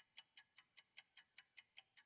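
Faint clock-ticking sound effect, about five quick, even ticks a second, marking time on a countdown timer.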